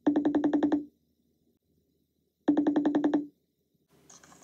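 A video-call ringing tone: two short electronic rings, each a rapid warbling trill under a second long, about two and a half seconds apart.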